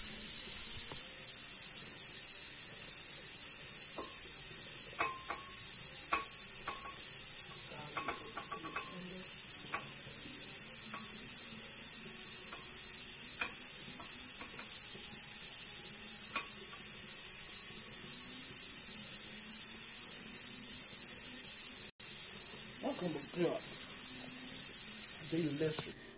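Kitchen food preparation: scattered light clinks and taps of a knife and utensils against dishes over a steady high hiss.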